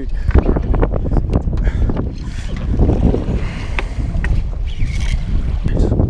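Wind buffeting the microphone on an open boat: a steady low rumble throughout.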